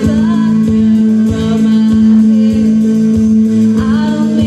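Live rock band playing: a woman singing into a microphone over drums, with a strong low note held steady underneath.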